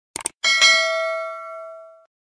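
A quick double mouse click, then a bright bell chime that rings and fades away over about a second and a half: the sound effect of an animated subscribe button and notification bell.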